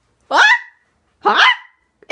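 A person's voice giving two short, loud yelps about a second apart, each rising in pitch.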